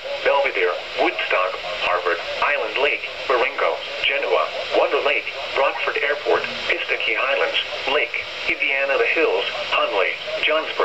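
NOAA Weather Radio's automated voice reading a severe thunderstorm warning's list of impacted towns, heard through a weather radio's speaker with a narrow, tinny sound.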